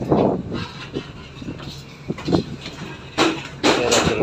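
Wind buffeting the microphone on the deck of a ship under way at sea, with the rushing noise of the moving vessel beneath it. The gusts come unevenly, with loud bursts right at the start and again about three seconds in.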